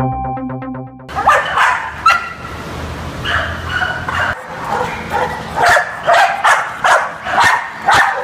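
A short electronic jingle ends about a second in; then several dogs in shelter kennel runs bark, many barks overlapping in a continuous din.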